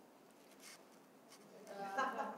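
Quiet room tone with a few faint ticks, then a faint voice near the end.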